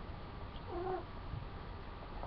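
A single short, faint cat meow, rising and falling, about two-thirds of a second in.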